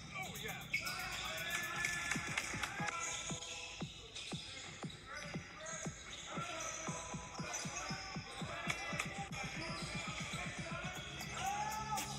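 A basketball being dribbled on a hardwood gym floor, the bounces coming faster and more evenly in the second half. Voices and music sound under the dribbling.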